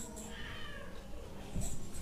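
A meow-like animal call, most likely a cat, short and falling in pitch, with a sharp click near the end.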